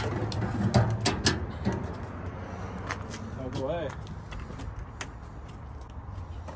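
Scattered sharp clicks and clanks of a snowmobile being handled as its rear is levered up onto a metal track stand, before its first start. The engine is not yet running.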